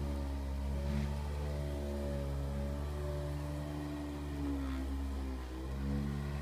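Motor of a handheld electric massager running with a steady hum, its pitch wavering slightly as it works over the back.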